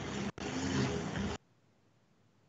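A burst of background noise with a faint low hum coming through a participant's video-call microphone. It opens with a click, has a brief dropout, and is cut off abruptly after about a second and a half.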